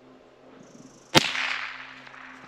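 A single shot from a Derya TM-22 .22 LR rifle about a second in: one sharp crack that trails off over most of a second.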